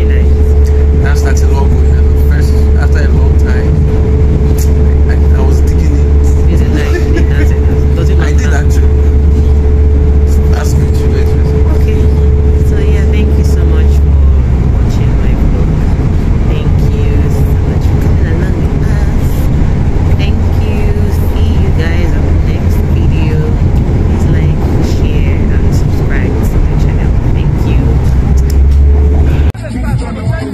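Passenger train running, heard from inside the carriage: a loud, steady low rumble with a steady hum over it, both of which ease about halfway through.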